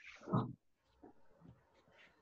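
A man's short, breathy grunt of effort, once, about a third of a second in, as he works through a push-up.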